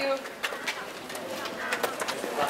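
Background chatter of a group of people, with a few sharp clicks or footsteps about half a second in and again near the end.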